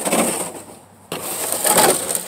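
Black plastic feed tub full of hay being shoved along the ground under a fence rail, two scraping pushes of about a second each.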